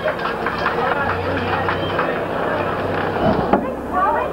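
Indistinct chatter of spectators' voices, with a steady low hum underneath and a short knock a little after three seconds in.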